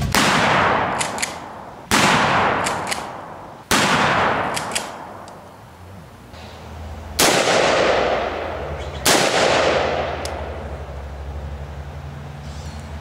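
Five loud gunshots, each followed by a long echoing decay, with a longer gap before the fourth. A low steady hum runs underneath.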